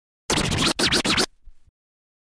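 Logo-sting sound effect: two quick bursts of a sweeping, scratchy noise, about a second in all, with a short faint tail and then it cuts off.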